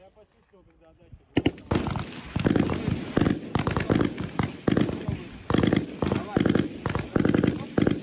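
A man's voice talking loudly in short phrases, starting about a second and a half in just after two sharp cracks.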